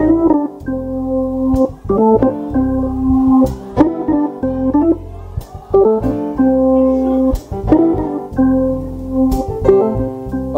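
Organ playing held chords over a deep bass note, the chord changing every second or two: the song's guitar lick carried on the organ.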